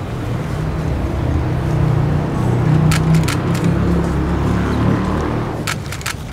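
Low engine rumble that swells to its loudest about halfway through and fades near the end, with a few sharp clicks.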